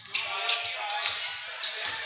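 A basketball being dribbled on a hardwood gym floor, several bounces, under voices in the gym.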